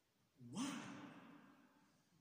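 Speech: a man slowly saying a single drawn-out, breathy "why" that trails off.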